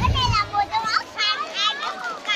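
Stage music cuts off just after the start, followed by children's high-pitched voices calling and shouting out several times.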